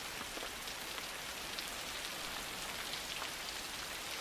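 Rain falling steadily: an even, unbroken hiss.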